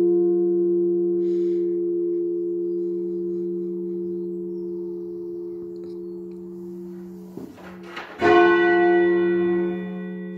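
A 1649 church bell by Evans of Chepstow, the 13 cwt 6th of a ring of eight, tolled half-muffled with a leather pad strapped on one side. The hum of one stroke slowly dies away, then a new stroke about eight seconds in rings out and sustains.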